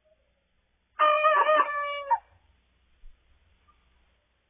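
A rooster crowing once: a single short crow of just over a second, starting about a second in.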